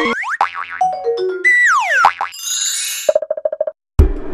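Cartoon-style sound effects of an animated logo sting: a quick string of swooping, falling pitch glides and boings with a few short notes, then a fast stutter of short beeps that cuts off just before the end.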